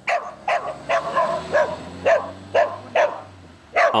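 A dog barking and yipping repeatedly in short, high calls, about two a second, excited by a car driving past.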